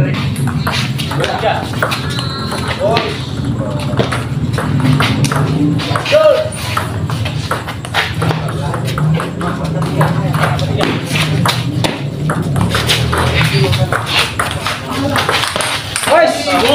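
Table tennis ball clicking sharply and irregularly off paddles and the table in a rally, over background music and voices.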